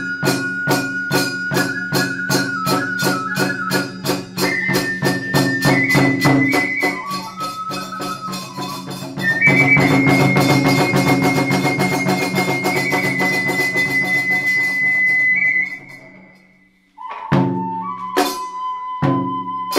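Iwami kagura hayashi in the fast hachi-chōshi style: a bamboo flute plays a melody over a quick steady beat of large barrel drum, small drum and hand cymbals, about four strikes a second. From about nine seconds in the playing grows louder and the flute holds one long high note. Near the end the music dies away for about a second, then starts again.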